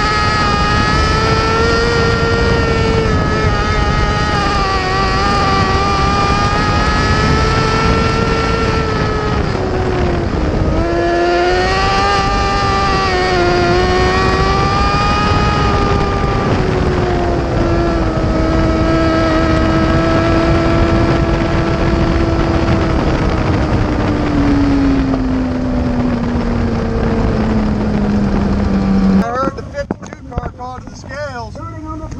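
Mini sprint car engine heard from on board, running hard on a dirt track with its pitch rising and falling, dipping about ten seconds in. Over the last several seconds the pitch falls steadily as the car slows, and the sound cuts off suddenly near the end.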